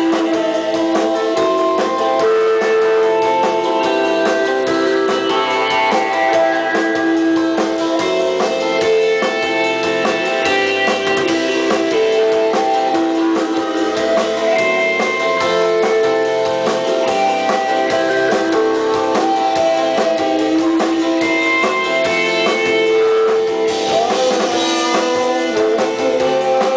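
Indie rock band playing live: electric guitars pick melodic lines over a drum kit, and the cymbals get brighter near the end.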